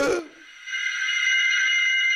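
A short pitched hoot-like sound at the very start, then a steady, high-pitched chord of several held tones from about half a second in, like an edited-in electronic sound effect.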